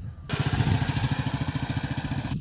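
Motorcycle engine running close by as the bike rides off along a dirt track, a fast, even putter of exhaust pulses with a hiss over it. The sound starts abruptly about a third of a second in.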